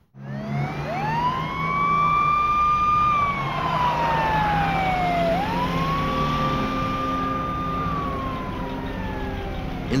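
Fire engine siren wailing: it rises to a high held note, falls slowly, then rises and falls again, over a steady low engine hum.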